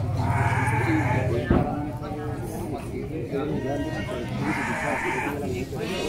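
Goats bleating, two long wavering bleats: one in the first second and another about four and a half seconds in, over background voices.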